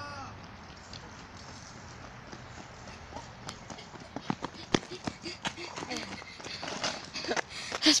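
Children's running footsteps slapping on asphalt, coming closer. They begin faintly about three and a half seconds in and get quicker and louder toward the end.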